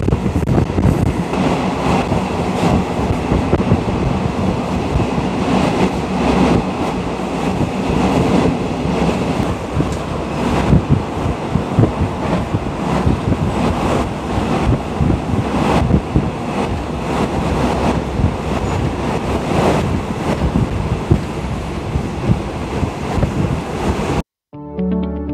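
Passenger carriage of a moving Thai ordinary-class train, heard from inside with its windows open. The wheels run on the track in a steady rumble, with sharp knocks every few seconds.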